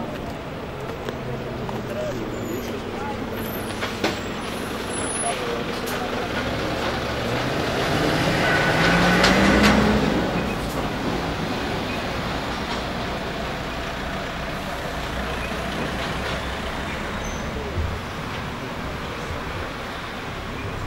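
A motor vehicle passing. Its engine rises in pitch as it comes up and is loudest about nine seconds in, then fades back into a steady outdoor background.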